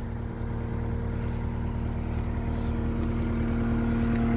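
Caterpillar 242D skid steer's diesel engine running at a steady pitch, growing slightly louder over the few seconds.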